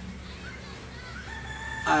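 A rooster crowing faintly in the background, one drawn-out crow in the second half.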